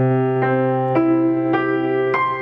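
Grand piano played slowly: a low bass note rings on under the damper pedal while new notes come in about every half second above it.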